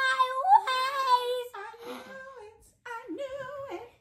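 A young girl's high voice squealing in sung, drawn-out notes, gleeful and triumphant. The first note is held for about a second and a half, and a shorter one comes near the end.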